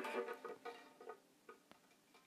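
Faint, scattered ticks and light taps, a few with a brief string ring, from a viola and bow being handled just after the final chord has died away. The taps thin out and stop well before the end.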